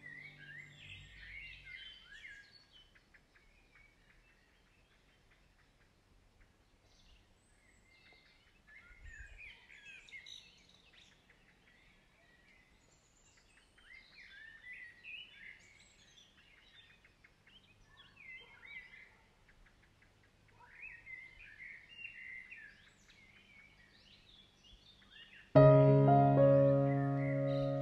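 Small birds chirping and twittering in short bouts every few seconds, with quieter gaps between. Soft music fades out in the first second or two, and piano music comes in loudly near the end.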